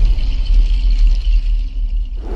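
Loud, deep bass rumble with a hiss riding above it, the sound design of an animated channel-logo intro sting.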